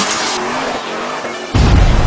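A car sliding with its tyres squealing, laid over electronic music, followed by a loud deep bass hit about one and a half seconds in.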